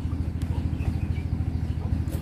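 An engine idling steadily, a low, rapid, even pulsing.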